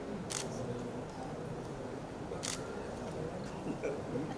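Two short, sharp clicks about two seconds apart, over a faint background murmur.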